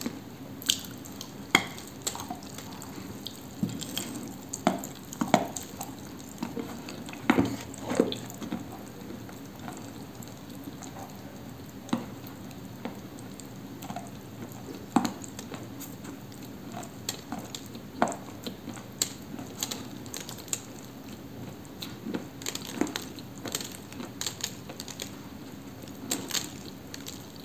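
Mouth sounds of biting and chewing chunks of Cambrian clay coated in wet clay paste: irregular sharp clicks and bites, sometimes several in quick succession, over a steady low hum.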